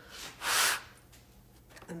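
A person's breath close to the microphone: one short airy puff about half a second in, lasting about half a second.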